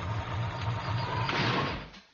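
TV show logo bumper sound effect: a noisy whoosh over a low pulsing throb, with a click at the start, fading out near the end.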